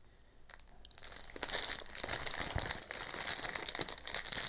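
Plastic packaging bags holding small mounting hardware crinkling and rustling as they are handled, with small clicks of the parts inside. It starts about a second in, after a quiet moment.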